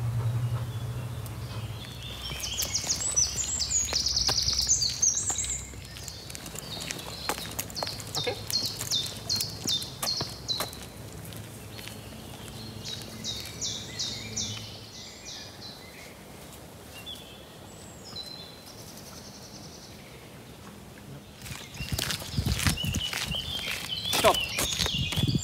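Songbirds singing, with three runs of quick, repeated high phrases in the first half, over faint footsteps on a paved path. Louder knocks and rustling come near the end.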